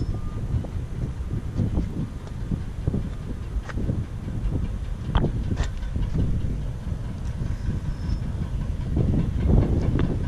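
Wind buffeting the microphone as a steady, uneven low rumble, with a few faint clicks around the middle.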